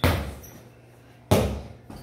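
Two hard thuds of a football in a bare tiled room, each trailing a short echo: the ball slapped down onto the floor at the start, and another hit a little over a second later.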